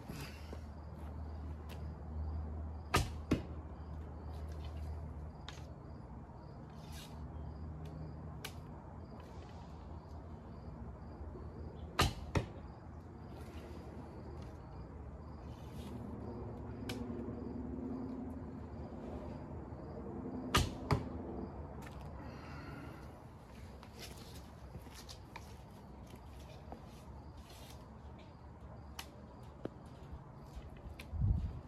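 Three shots from a light-draw wooden longbow, about 3, 12 and 21 seconds in. Each is a sharp slap of the string on release, followed a fraction of a second later by a second knock as the arrow strikes the target.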